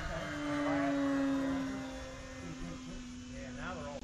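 The E-flite Pitts S-1S 850mm RC biplane's electric motor and propeller whine with one steady tone as the plane passes overhead. The whine is loudest about a second in, then fades slowly and drops slightly in pitch. A voice speaks briefly near the end.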